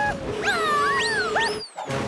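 Cartoon animal calls: about four quick high cries, each swooping up in pitch and falling, over background music. They cut off shortly before the end.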